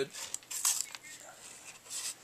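Pocket knife cutting through plastic packaging, with short scratchy scraping sounds about half a second in and again near the end.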